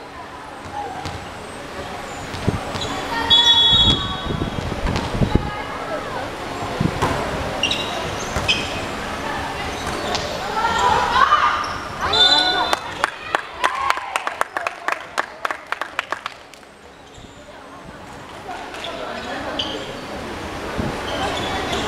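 Indoor volleyball rally: players and supporters shouting and cheering, with sharp ball strikes. From about twelve seconds in there is a burst of quick clapping, which stops about four seconds later and leaves only quieter voices.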